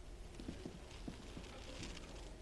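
Quiet room tone in a pause of a recorded talk: a low steady hum with a string of faint, soft ticks, a few each second.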